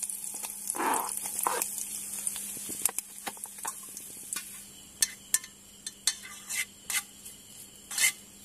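Sliced onion, garlic and curry leaves sizzling in hot oil in a small frying pan on a portable gas stove, with a steady hiss. A steel spoon scrapes and clicks against the pan now and then as it stirs.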